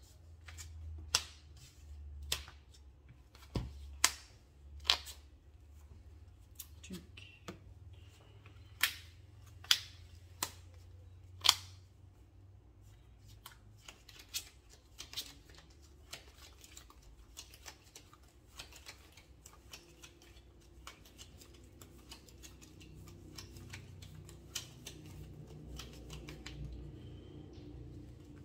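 Sleeved trading cards handled on a tabletop. About ten sharp, loud clicks and snaps come in the first twelve seconds as cards are put down and picked up, then a longer run of softer, quicker ticks.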